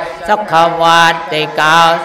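A Buddhist monk chanting into a microphone in a steady, near-monotone recitation, phrase after phrase, with a brief pause for breath just after the start.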